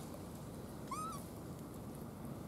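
One short, high call from a long-tailed macaque, likely an infant, about a second in; the pitch rises and then dips slightly. A steady low outdoor background runs underneath.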